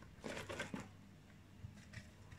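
Faint rustling and light taps of raw cauliflower florets being handled and placed by hand into a glass jar, with soft rustles in the first second and a couple of small ticks near the end.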